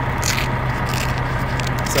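Steady low hum of an idling truck engine, with a few brief scraping and rustling noises over it.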